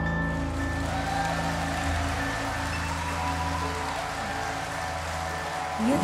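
Soft live pop-ballad band interlude: held bass notes and sustained piano and guitar chords with a gently pulsing note and a faint shimmering wash, slowly fading. A voice starts singing right at the end.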